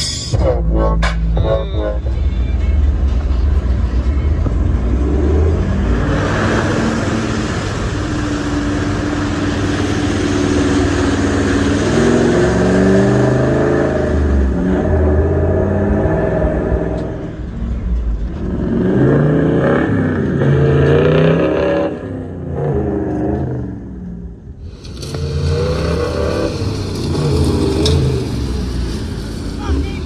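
Off-road 4x4 vehicles driving on dirt tracks. First a heavy low rumble as heard inside the cab, then engines revving, rising and falling in pitch, in several clips joined by abrupt cuts.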